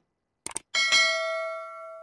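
Two quick clicks, then a bright bell ding that rings out and fades over about a second and a half: the sound effect of an animated subscribe-button and notification-bell overlay.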